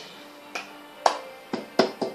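Slow cup-song rhythm: four sharp claps and taps from hands and a cup on a table, about half a second apart, the last two closer together.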